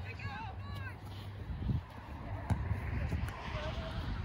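Distant shouts from players and spectators at a soccer match, with one sharp thud of a ball being kicked about two and a half seconds in.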